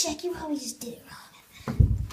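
A person's high-pitched voice making wordless, whispery sounds, then a single thump near the end.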